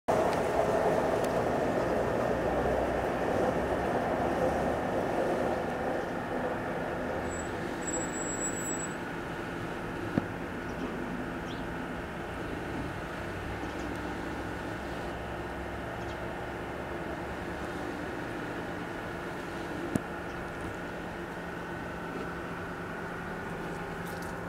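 Steady background noise with a faint low hum, louder in the first few seconds and then even, broken by two brief sharp clicks about ten seconds apart.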